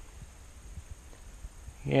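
Faint low rumble of a breeze on the microphone outdoors, with a few light ticks. A man's voice starts near the end.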